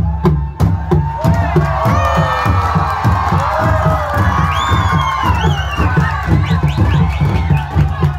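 Bedug drums, large Indonesian barrel drums, beaten with wooden sticks in a fast, steady rhythm of deep strikes. From about a second in, a large crowd cheers and shouts over the drumming.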